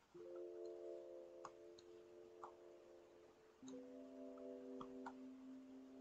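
Very faint background music: soft held chords, changing to a lower chord a little past halfway, with a few faint clicks scattered through.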